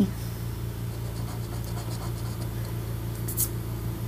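Coin scratching the coating off a scratch-off lottery ticket: a run of quick, light rasping strokes, then a short swipe a little past three seconds in.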